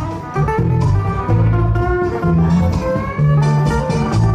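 Country string band playing an instrumental passage: strummed acoustic guitar over steady low bass notes, with a lap-style resonator guitar (dobro) played with a slide bar carrying the melody.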